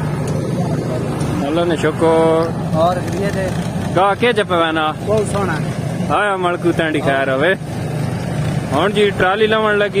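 Steady low drone of tractor engines and a tractor-driven wheat thresher running, under a man's voice talking in several loud stretches.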